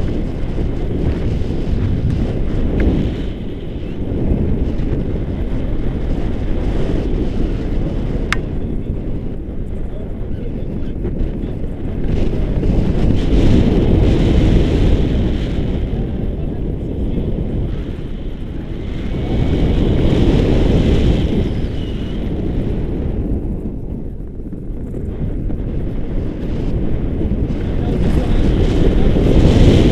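Rushing wind buffeting a camera microphone on a tandem paraglider in flight: a loud, low rumble that swells and eases as the glider moves through the air, strongest about halfway through and again about two-thirds of the way in.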